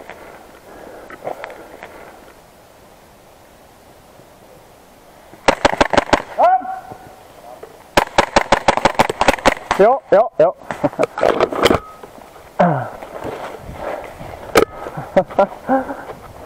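Airsoft Glock pistol firing quick strings of shots: a short run of about half a dozen about five seconds in, then a longer string a couple of seconds later. Shouting voices come between and over the shots.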